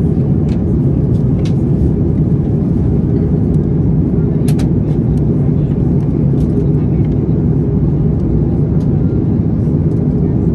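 Steady low drone of cabin noise inside an Airbus A330-900neo airliner in flight: its Rolls-Royce Trent 7000 engines and the rush of air, heard from a seat over the wing. A few faint brief clicks sit on top, one a little clearer about halfway through.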